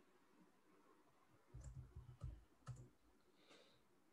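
Faint computer keyboard keystrokes, about five quick taps in a short run about a second and a half in, typing a word.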